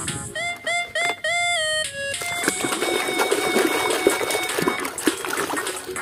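A run of repeated electronic beeping notes, each starting with a quick upward slide, like a battery toy gun's sound effect. From about two and a half seconds in, water sloshes and splashes in a tub as a plastic toy gun is swished through it, with thin steady electronic tones carrying on underneath.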